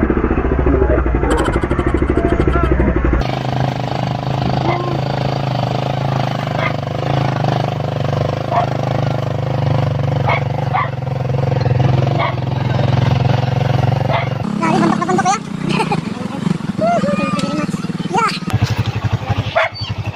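Motorcycle engine of a sidecar tricycle running steadily under way, heard from inside the sidecar. The engine sound changes and drops about 14 to 15 seconds in, with voices over it near the end.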